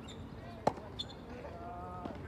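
Tennis rally: a sharp pop of a tennis ball striking a racket about two-thirds of a second in, with fainter ball hits just before and about a second in. A brief voice call comes near the end.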